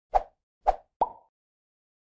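Three quick pop sound effects, the second about half a second after the first and the third close behind it, the last carrying a brief ringing tone: the sound of an animated logo intro.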